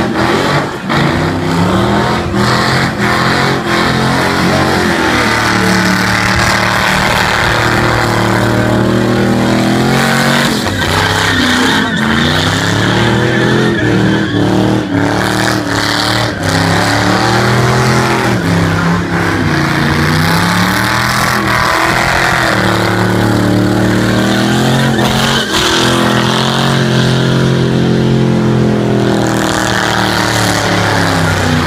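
Car engine revving hard through a burnout, its pitch swinging up and down over and over, with the hiss of spinning tyres beneath.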